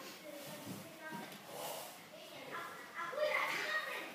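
Children's voices calling and chattering in a large room, loudest near the end.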